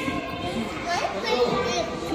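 Children talking and laughing, several voices together.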